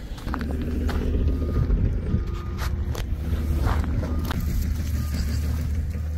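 A steady low rumble with several short sharp knocks over it.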